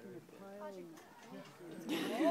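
A wolf growling, low and wavering, with quiet voices under it, while it guards food from the rest of the pack.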